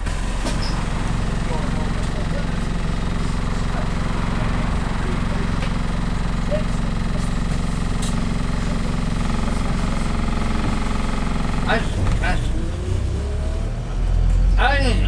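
Bus engine and road noise heard from inside the cabin of a moving bus: a steady low drone. About twelve seconds in a brief voice is heard, and a whine rises in pitch near the end.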